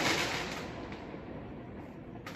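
The fading tail of a loud aerial firework bang: its noise dies away over about a second, leaving a low background.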